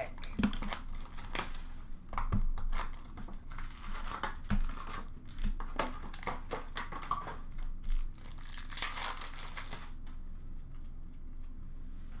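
Upper Deck SP Authentic hockey card pack wrappers being torn open and crinkled by hand, with short clicks and rustles as the cards are handled. A longer tearing hiss comes about three quarters of the way through.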